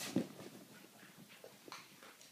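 Boston terrier mouthing and smacking on a walnut as it moves across a couch: one sharper click about a quarter second in, then soft scattered clicks.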